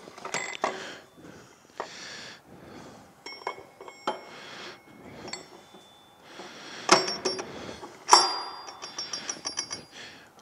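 Metal transaxle parts clinking, knocking and scraping as the input shaft and gear are set into the transaxle housing, several strikes ringing briefly. The two loudest knocks come about seven and eight seconds in.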